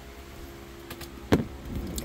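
A steady low background hum with one sharp click about two-thirds of the way through, preceded by a couple of faint ticks.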